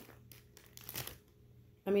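Faint crinkling of a foil snack bag of Doritos as a hand reaches in for a chip, a few brief rustles around a second in.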